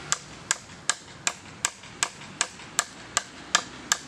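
Hammer tapping a chisel into a wooden log while carving: a steady run of sharp, evenly spaced strikes, about two and a half a second.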